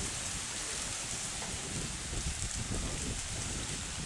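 Wind blowing on the microphone, with a low, uneven rumble of buffeting under a steady hiss.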